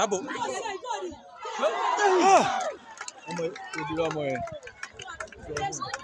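Several people at the touchline talking and calling out over one another, with one loud, rising-and-falling shout about two seconds in.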